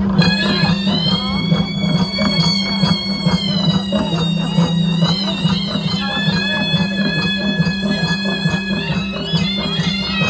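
Traditional Khasi festival music: a reed pipe (tangmuri) holding long high notes that shift pitch a few times, over steady drumming.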